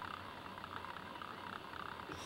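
Faint steady hiss and room noise, with no distinct sound standing out.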